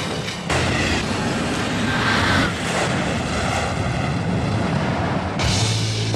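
Dramatic trailer music with a loud, dense rumble of sound effects layered over it; the noise rises again about half a second in and holds, and a deep steady tone enters near the end.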